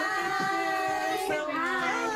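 High-pitched women's voices in long, held, sung-like notes that glide up and down and overlap.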